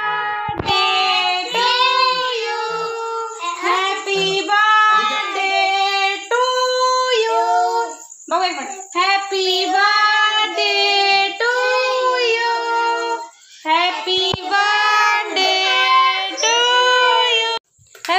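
Young children singing together in high voices, phrase after phrase of long held notes with short breaks between them.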